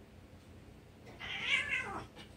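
A domestic cat gives one loud meow about a second in, lasting just under a second and falling in pitch at the end.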